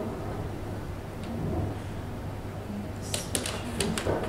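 Clicks of metal duckbill hair clips being handled while a hairstyle is sectioned: one click just after a second in, then a quick run of several clicks near the end, over a steady low room hum.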